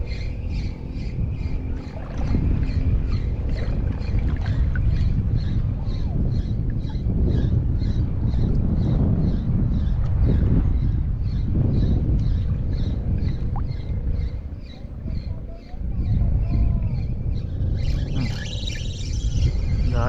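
Wind noise on the microphone and water sloshing around a wading angler, with a faint, fast, even ticking, about two or three a second, all the way through. Near the end comes a brief splashing as a small hooked fish is brought to the surface.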